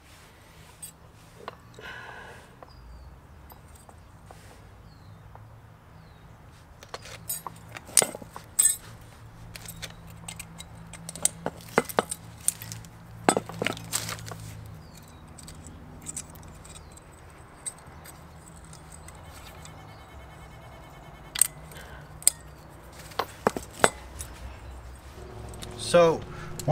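Thin metal brake-pad shims and small brake parts clinking and clicking as they are handled and fitted by hand: irregular light metallic clicks in a few short clusters, over a low steady hum.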